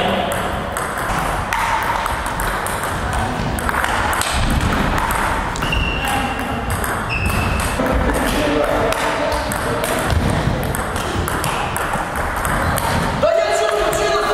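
Table tennis balls clicking quickly and irregularly off paddles and tables in rallies, with voices in the background.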